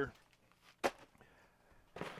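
A single short, sharp knock a little under a second in, otherwise quiet: something knocking against the cardboard shipping box as its contents are handled.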